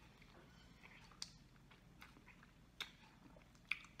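Faint chewing of a mouthful of rolled crepe, with a few soft short clicks from the mouth.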